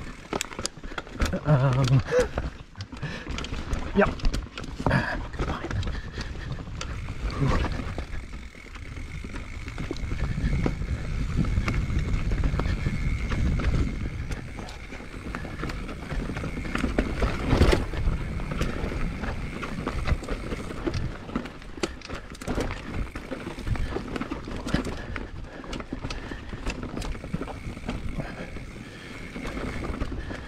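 Mountain bike ridden down rocky forest singletrack: the frame and parts rattle and clatter over rocks, densest in the first few seconds, over the rumble of tyres on dirt and wind on the camera microphone. A thin, steady high whine runs through the second half.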